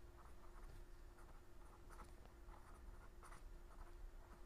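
Faint scratching of someone writing or drawing by hand, a series of short irregular strokes, over a steady low hum.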